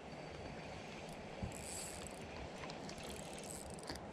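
Faint, steady whirring of a spinning fishing reel being wound in as a hooked fish is retrieved, with one light knock about a second and a half in.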